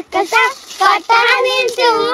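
Young girls singing in high voices, in short phrases broken by brief pauses.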